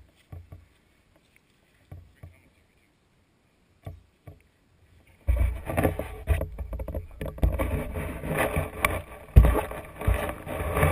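A few soft knocks on the action camera's waterproof housing. About five seconds in, a loud, continuous rumbling and rustling begins as the camera is picked up and moved about.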